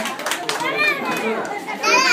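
Excited children's voices and chatter around a party table, with a loud, high-pitched child's squeal near the end.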